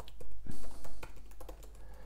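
Typing on a laptop keyboard: a run of quick key clicks, busiest and loudest in the first second, then lighter.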